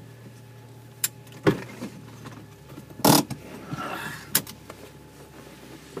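Low, steady engine hum of an off-road vehicle crawling over a rocky trail, broken by a few sharp knocks and creaks. The loudest clatter comes about three seconds in.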